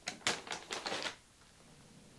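Anti-static plastic bag crinkling as it is handled and set down on a pile of other bags: a quick run of crisp crackles lasting about a second, then it stops.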